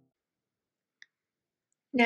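Near silence, broken only by one faint, short click about a second in.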